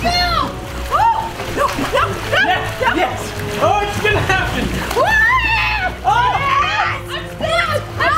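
Several children and adults shrieking and squealing over and over, with water splashing around swimmers and inflatable pool floats.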